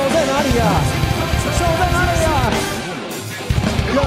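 Live rock band playing loud, with electric guitar and a drum kit under a singing voice. About three seconds in the band thins out and the low end drops away, then the full band crashes back in half a second later.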